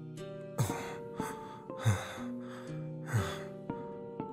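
Background music with slow held notes, over which a voice actor's three heavy, gasping breaths of a panting character come about a second and a half apart.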